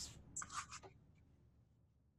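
Faint scratching of a paintbrush stirring acrylic paint on a plate palette, a few soft strokes in the first second, then near silence.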